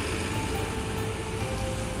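Street traffic noise, a steady rumble of passing vehicles, under background music with slow held melody notes.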